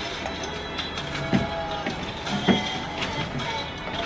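Background music playing steadily, with two brief sounds about a third and two thirds of the way through.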